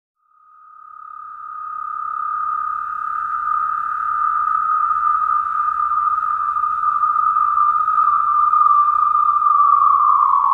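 A single sustained electronic synth tone, fading in over the first couple of seconds and then held steady with a faint low hum beneath it, opening a hip-hop track. Near the end the tone begins to slide down in pitch.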